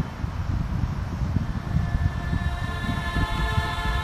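Low, uneven rumble of a moving vehicle's road and wind noise, with music faint underneath holding a few steady notes.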